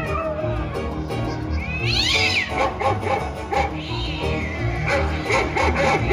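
A cat meowing over background music with a steady beat: one clear rising-then-falling meow about two seconds in, and a fainter one around four seconds.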